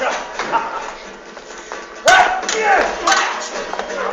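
Actors shouting and crying out during a staged sword fight, loudest about two seconds in, with a short sharp knock a second later.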